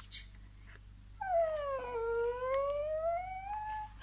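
A voice imitating a door creaking open: one long, drawn-out squeak lasting about two and a half seconds that falls in pitch and then rises again.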